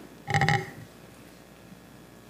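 A brief, low, pulsing vocal sound from a person, about a quarter second long shortly after the start, then quiet room tone.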